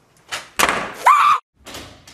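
A sudden loud bang and clatter lasting under a second, cut off abruptly, with a few fainter knocks after it.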